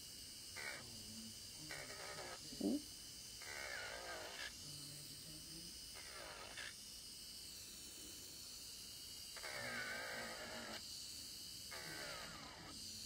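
Electric nail drill (e-file) running as its bit files around the edges of a fingernail, with a few short stretches of louder grinding where the bit bears on the nail.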